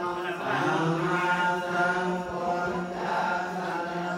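Theravada Buddhist monks chanting together in unison: a steady, low group chant held on one pitch.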